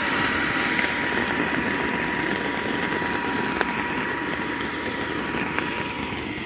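Electric inflatable blower running steadily, a strong rush of air with a steady high whine, as it fills an inflatable movie screen.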